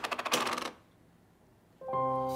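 A quick run of small clicks and rattles as a handbag and papers are rummaged through on a table, which stops after under a second. Near the end, soundtrack music begins with held notes.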